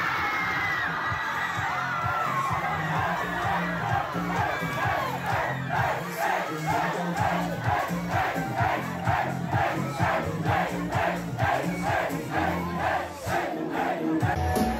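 A party crowd yelling together, first one long massed shout, then chanting in a quick steady rhythm of about two shouts a second. Music with a bass beat plays underneath.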